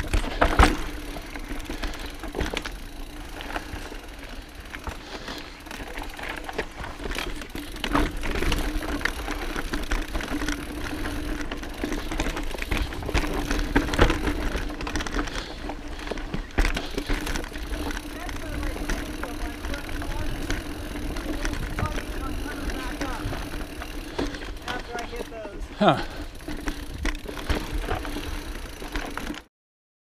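Mountain bike rolling down a dirt singletrack: continuous tyre and riding noise with frequent knocks and rattles as the bike goes over bumps and roots, over a steady hum.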